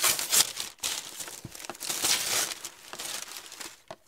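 Packaging crinkling and rustling in irregular bursts as a package is unwrapped by hand.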